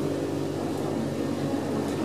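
Steady low mechanical hum of aquarium machinery, several constant low tones over an even background hiss.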